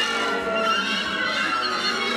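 Free-improvised jazz played live by a band: a wind instrument gives wavering high notes over drums and other instruments.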